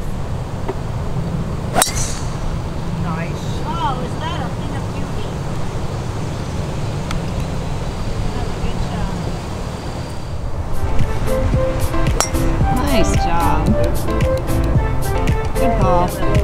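A golf club strikes a ball off the tee about two seconds in, one sharp crack, over a steady low rumble of wind on the microphone. Background music comes in at about eleven seconds.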